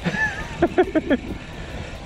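A man's short laugh in the first second, quick repeated syllables, over a steady low rumble of wind on the microphone.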